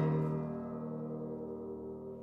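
A low piano chord struck once and left to ring, its notes held and slowly fading away.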